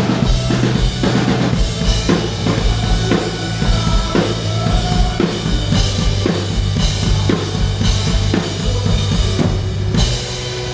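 Live rock band playing an instrumental stretch, the drum kit to the fore with regular kick and snare hits over sustained bass notes.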